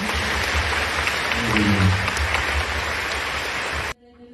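Audience applause: steady, dense clapping that cuts off suddenly just before the end.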